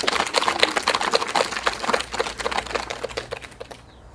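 Small audience applauding, individual hand claps distinct and irregular, thinning out and dying away near the end.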